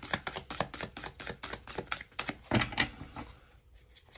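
A deck of tarot cards being shuffled by hand: a quick run of crisp card clicks and flutters that thins out and stops near the end.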